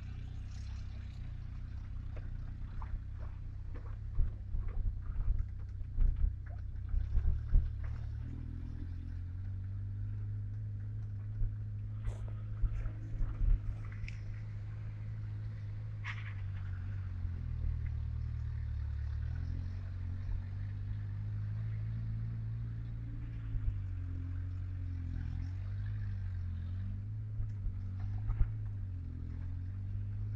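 A car's engine running and its drive noise heard from inside the cabin while driving slowly, a steady low drone that shifts pitch a little as it changes speed. Short knocks and rattles of the body and interior come over bumps, most between about four and eight seconds in and again around twelve to fourteen seconds.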